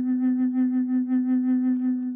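Native American flute holding one long low note with a steady pulsing vibrato, about six pulses a second.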